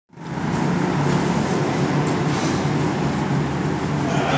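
Steady din of an indoor go-kart hall, with kart engines running on the track. It cuts in abruptly at the start and then holds an even level.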